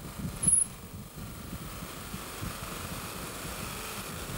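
Electric buffing-wheel motor running with a gyroscope rotor held against the spinning wheel, friction-driving the gyroscope up to high speed. A steady whir, with a brief louder moment about half a second in.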